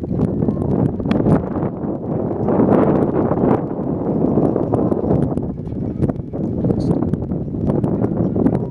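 Wind buffeting the microphone: a loud, uneven low rumble that swells near the middle.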